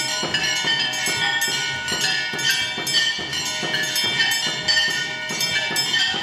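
Temple bells and metal percussion struck in a steady rhythm, about two strikes a second, their ringing tones overlapping and sustained between strikes.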